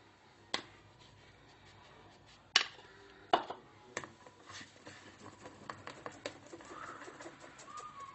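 A handful of sharp taps, the loudest about two and a half seconds in, then a run of faint quick ticks, as a metal mesh flour sieve is tapped and shaken over a plastic mixing bowl.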